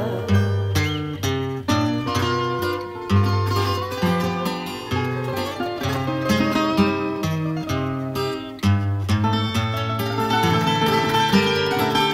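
An instrumental fado passage with no singing: a Portuguese guitar picks a quick, bright melody of plucked notes over a classical guitar's moving bass line.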